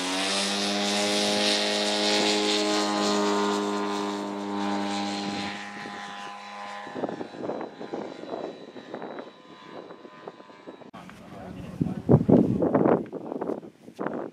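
Radio-controlled model tow plane's engine at full throttle, holding a steady pitch as the aero-tow climbs away, then fading out about seven seconds in. After that, irregular gusts of wind buffet the microphone.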